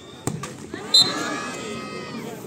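A volleyball is hit with a sharp smack about a quarter second in as a player spikes at the net. A second, louder smack comes about a second in, and spectators break into shouting and cheering right after it.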